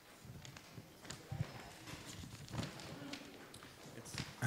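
Faint room noise in a hall: scattered light knocks and shuffling, with a low murmur of voices in the background.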